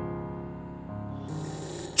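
Soft background music of held chords, changing chord about a second in.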